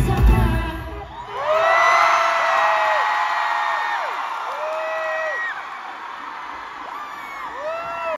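A live pop song with heavy bass ends abruptly about a second in. A concert crowd then cheers, with many long high-pitched screams held over the noise, loudest just after the music stops and slowly fading.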